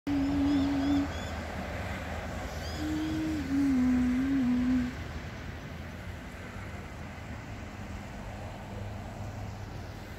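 A low, steady hum-like tone sounds twice in the first five seconds, the second time stepping down in pitch, while a small bird gives short high chirps in quick runs of three or four. A steady low background rumble runs under it all and is left alone for the second half.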